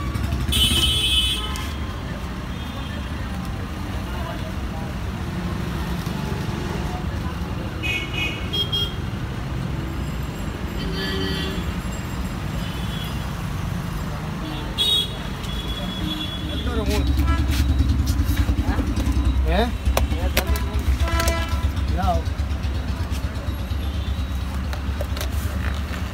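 Busy roadside street ambience: a steady low rumble of traffic and engines, with short car-horn toots and people's voices. The rumble grows louder about two-thirds of the way through.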